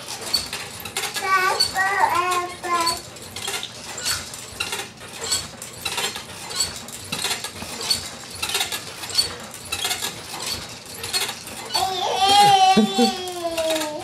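Baby bouncing in a Fisher-Price Jumperoo: the frame's springs and hanging toys clink and rattle in a steady rhythm with each bounce. The baby babbles briefly a second or two in, and an adult laughs near the end.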